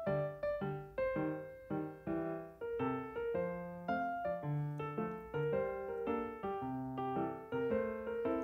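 Solo piano background music: single notes and chords struck a few times a second, each ringing and fading before the next.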